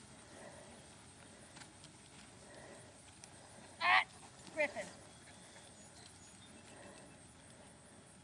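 Two short, high, wavering animal cries about half a second apart, the second sliding down in pitch, over a faint, steady background.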